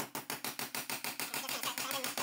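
Claw hammer tapping quickly and evenly, several light strikes a second, on a steel M6 bolt clamped between wooden blocks in a bench vise, bending it into an eye bolt.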